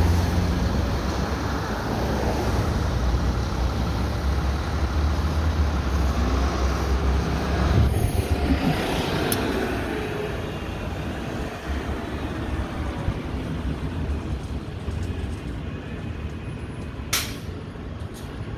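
A 2011 New Flyer C40LF CNG city bus, with a Cummins Westport ISL G natural-gas engine, pulling away from a stop. Its deep engine rumble fades out after about eight seconds as the bus drives off, leaving traffic noise.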